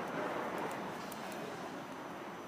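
Grass and dry plant litter rustling and tearing as it is pulled and cut out by hand, with small crisp clicks.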